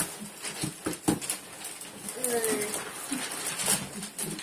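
Gift wrapping paper rustling and crinkling as it is pulled and folded around cardboard boxes, in quick irregular crackles, with a few faint voice sounds.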